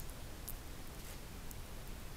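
Quiet room tone: faint steady hiss, with one faint click about half a second in.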